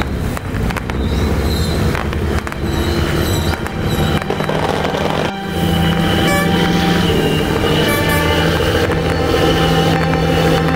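Boat horns sounding in long, steady blasts from about five seconds in, over the low running of the fishing boats' engines.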